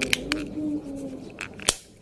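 Plastic casing of a Toyota Vios key remote being pressed shut by hand: a few small plastic clicks as the halves snap together, the sharpest one near the end.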